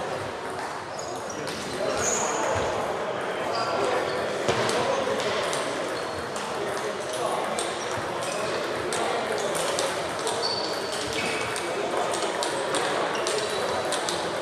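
Table tennis balls clicking off paddles and tables, irregular rally hits from several tables at once, over a steady murmur of voices in a large hall.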